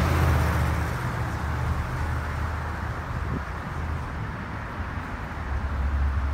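Cars passing on a city street. One goes by close at the start and fades away, and another comes up near the end, over a steady low rumble of traffic.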